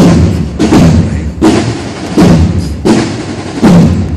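Drums of a cornet-and-drum band beating a steady march, with a heavy stroke about every three-quarters of a second.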